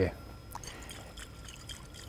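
Faint sloshing of liquid inside a glass separating funnel as it is gently shaken, mixing a water layer with chloroform to extract iodine. A light click comes about half a second in.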